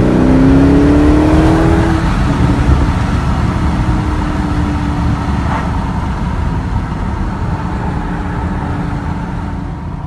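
2016 Audi S6's twin-turbo V8 heard from inside the cabin: the engine note rises as the car accelerates for about two seconds, then settles into a steady drone with road rumble. It is running at about 4,000 rpm in third gear in sport mode.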